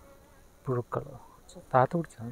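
Honeybees buzzing around an open hive frame of comb, with two short, louder buzzes as bees pass close, about two-thirds of a second in and near the end.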